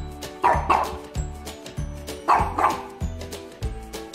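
A dog barking twice in two quick pairs, over background music with a steady beat.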